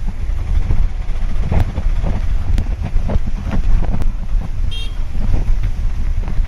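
Loud, dense low rumble of cyclone rain and wind buffeting the microphone, with scattered sharp knocks. A brief high-pitched horn toot sounds about five seconds in.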